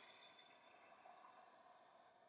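Near silence: faint room tone fading out.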